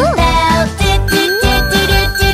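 A hand bell ringing in children's song music, with a steady high bell tone that starts about a second in and holds.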